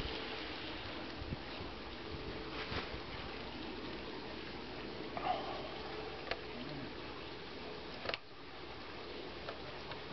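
Steady background hiss with a few scattered light clicks and knocks as a wooden tilting sculpting stand with a metal pipe joint is handled.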